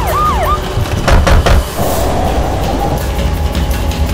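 Police car siren giving a few quick up-and-down sweeps at the start, over trailer music, followed by a couple of loud sharp hits a little over a second in.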